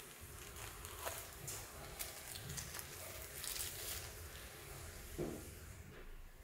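Packaging and parts being handled while an amplifier is unboxed: scattered light clicks and short rustles, with a longer rustle about three and a half seconds in and a duller knock near the end.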